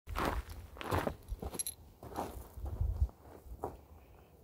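Footsteps and handling noise close to the microphone: a string of irregular rustles and soft knocks.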